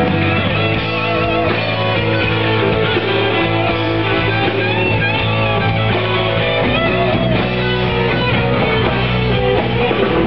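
A live rock band playing, with guitar to the fore, at a steady, loud level.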